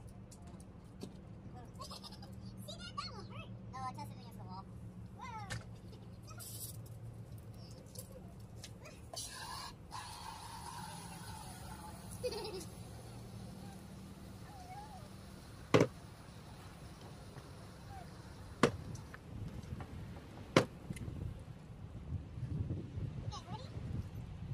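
A toddler babbling and calling in short wavering sounds, over a steady low hum. Three sharp knocks come in the second half, the loudest sounds here.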